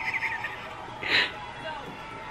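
A woman's high-pitched excited squealing, with a short, loud shriek about a second in.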